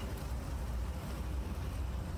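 Steady low rumble of outdoor marina background noise, with no distinct sound standing out.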